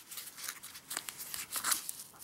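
Nylon belt pouch being handled and its flap pulled open: fabric rustling and scratching, with a couple of sharper crackles about a second in and again near the end.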